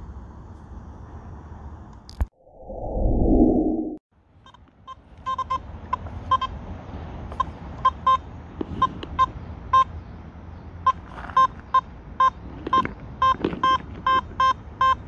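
Nokta Makro Simplex+ metal detector giving short, same-pitched beeps, about two a second, as its SP24 search coil is swept over a target signal. Before the beeps begin there is a click and a brief loud rush of noise about two seconds in.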